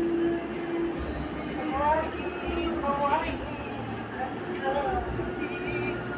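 Indistinct voices talking in the background over a steady low hum and rumble.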